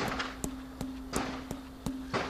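A large polished granite vessel tapped about three times a second, ringing with one steady low tone that holds between the taps. The speaker takes the single pitch as a sign that the vessel was tuned to a very specific tone.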